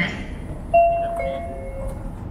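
Two-note electronic chime stepping down in pitch: a higher tone starts about three-quarters of a second in, then drops to a lower tone that is held for nearly a second.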